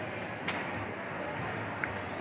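Steady indoor background noise of a shopping mall, with one sharp click about half a second in and a faint tick near the end.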